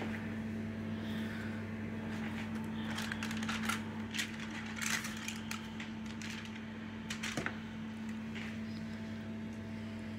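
A steady low electrical hum in a kitchen, with scattered light rustles and clicks from chicken pieces being handled on a foil-lined baking tray, busiest a few seconds in.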